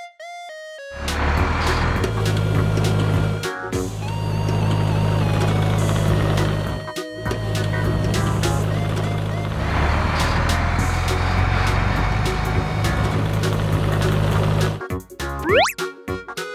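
Cartoon vehicle engine sound effects, a steady low hum that drops out briefly twice, under light children's background music. Near the end the hum stops and rising, boing-like sliding tones sound.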